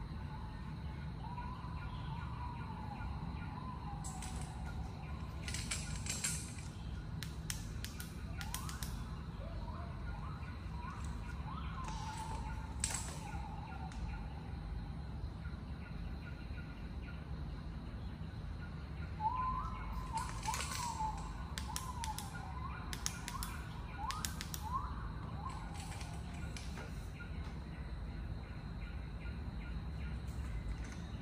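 Steady low background hum with two spells of bird chirping, a run of short up-and-down chirps mixed with sharp clicks, one in the first half and one about two-thirds through.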